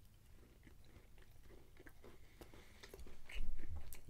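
A person biting and chewing a soft brownie: faint, scattered mouth clicks that get louder in the last second.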